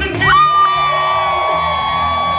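A live band with electric guitars and saxophone plays a song. About a quarter-second in, a high note slides up and holds steady for about two seconds.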